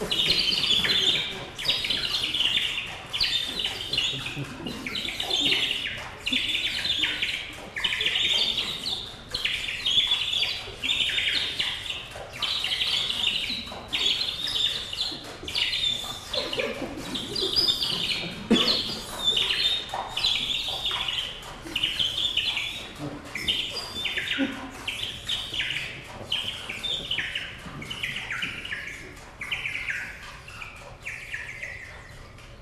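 A wind instrument plays short, bird-like chirping calls, about one a second, many of them falling in pitch. Near the middle there are a few faint lower sounds.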